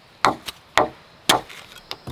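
A digging tool struck three times into soil in a post hole, sharp strikes about half a second apart, with a few lighter knocks and ticks after them.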